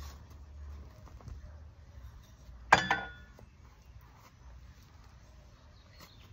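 A long-handled metal garden tool gives one sharp clank with a brief metallic ring about three seconds in, likely set down or dropped on the ground, amid faint rustling of soil and grass being worked.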